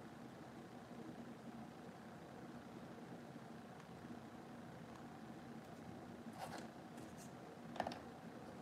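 Quiet, steady low hum of room tone, with a few light clicks and taps of small plastic model parts being handled and set down on the table near the end.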